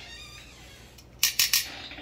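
Metal kitchen tongs clinking, a quick run of sharp metallic clicks a little over a second in.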